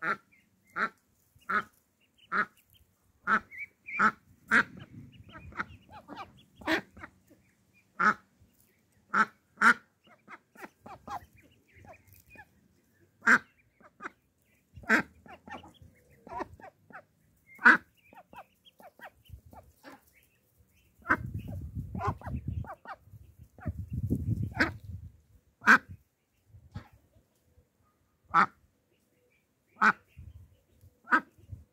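Indian Runner duck quacking in short, sharp single calls, repeated irregularly about once a second. A low rumbling noise comes in a few seconds in and again for several seconds past the two-thirds mark.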